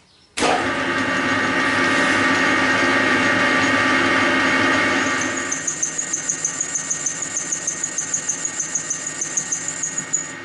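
Lathe tool chattering as it cuts into the hard steel of a four-jaw chuck body. A loud, rough cutting noise starts abruptly just after the spindle is switched on, and about halfway through it turns into a high-pitched squeal pulsing several times a second. The chatter comes from too much tool stick-out.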